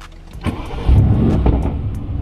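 Mercedes-Benz car engine being started, heard from inside the cabin: the starter turns it over about half a second in, the engine catches with a loud burst just before a second in, then settles into a steady low idle.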